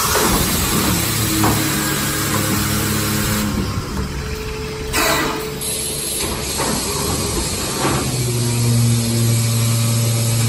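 Grain weighing and vacuum packing machine running: a steady mechanical hum with a low pitched drone that sets in about a second and a half in and again, louder, about eight seconds in. Short bursts of air hiss at the start and about five seconds in.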